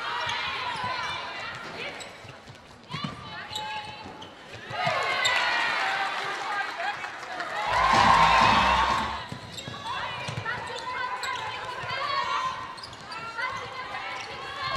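Live court sound of an indoor netball match: players' shouted calls and trainers squeaking on the wooden court floor. A louder swell of noise comes about eight seconds in.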